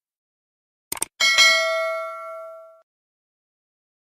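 A short click, then a single bell-like chime with several ringing overtones that fades out over about a second and a half.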